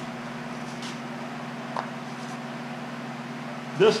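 A steady, low mechanical hum, with a faint click about two seconds in.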